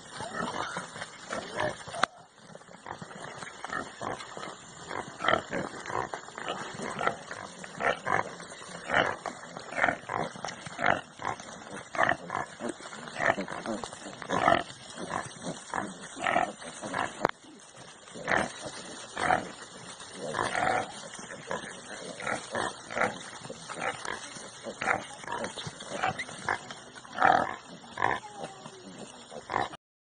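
Repeated short animal cries, two or three a second, from a hen scuffling with dogs.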